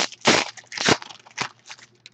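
Foil wrapper of a trading-card pack being torn open and crinkled by hand: four short crackling rustles, the first two loudest, fading toward the end.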